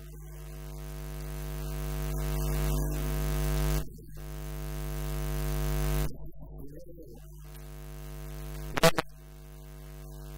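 Electrical mains hum on the sound track, a steady buzz that swells over a few seconds, cuts off abruptly, and returns several times. A single sharp knock comes near the end.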